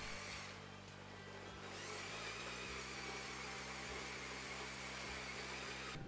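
LEGO toy trains running on plastic track, the 10277 Crocodile locomotive driven by a Powered Up Technic large motor: a faint, steady electric-motor whir and gear noise, with a regular ticking of wheels over the track joints after about two seconds.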